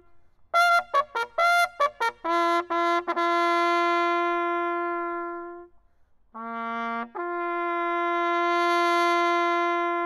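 Solo bugle call: a run of short quick notes, then a long held note. About six seconds in comes a brief lower note, then a step up to another long held note.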